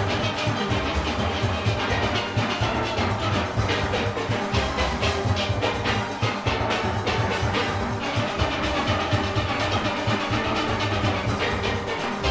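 A full steel orchestra playing fast: many steelpans struck in quick runs over bass pans, backed by a drum kit and congas in the engine room.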